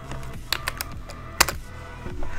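Computer keyboard keys being tapped: a quick run of about four keystrokes half a second in, then a single sharper, louder click about a second and a half in.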